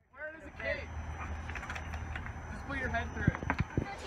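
Faint chatter of several voices over a steady low rumble, with a few sharp knocks about three seconds in.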